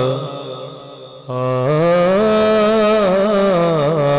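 A man's solo voice singing a naat in long, drawn-out melodic lines. The voice fades to a softer trailing note near the start, then comes back strongly about a second and a half in with a long held note that rises in pitch and wavers.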